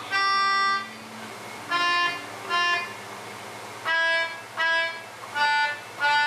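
Melodica played note by note in a slow tune: about six separate reedy notes at changing pitches, each held up to most of a second with short gaps between, the keys pressed by the player's foot.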